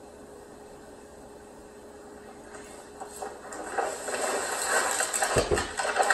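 Soundtrack of elephant-charge footage playing through the TV speakers: quiet at first, then a noisy, crackling sound that builds from about three seconds in and grows loud, with a short low thump near the end.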